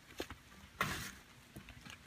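Faint rustling of feet shifting in dry fallen leaves, with a brief louder crunch just before the middle and a few light clicks.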